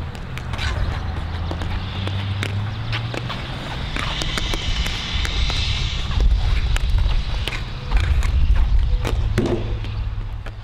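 Ball hockey sticks clacking against a ball and the plastic tile floor during stickhandling, scattered sharp clicks over a steady low rumble.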